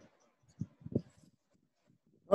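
A pause in a man's talk: mostly quiet, with two short, soft vocal sounds about half a second and a second in.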